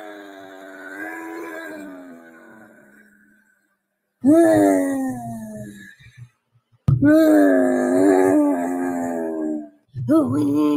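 A woman's voice drawn out into long, wavering wailing cries, three in a row, with short silences between them: a sung, stretched-out "beeeeze". A brief laugh comes at the very end.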